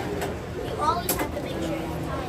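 Indistinct background voices of people talking in the room, with one sharp click about a second in.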